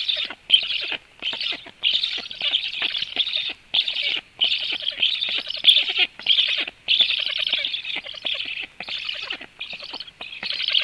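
Black stork chicks begging for food: a steady series of harsh, rasping calls, each lasting under a second, with only brief breaks between them.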